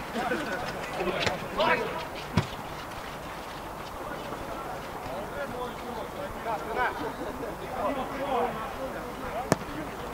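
Football players shouting across an outdoor pitch, with a dull thud of a ball strike a couple of seconds in and one sharp kick of the ball near the end, the loudest sound.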